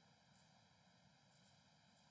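Near silence: a faint, steady hiss with a thin electrical hum.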